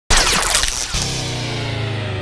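Label intro sound effect: a sudden loud crash of noise with falling glides, then, about a second in, a low buzzing tone with many overtones that rings on and slowly fades.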